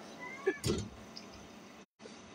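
A cat meowing faintly: one short cry that rises and falls in pitch, in the first second.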